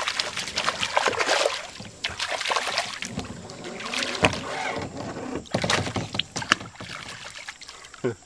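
Hooked bass thrashing at the surface beside a plastic kayak, giving irregular splashes and sharp knocks through the fight.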